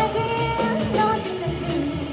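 Live jazz quintet playing: a female voice holds the end of a sung phrase, fading within the first half second, while guitar, double bass, keyboard and drum kit play on.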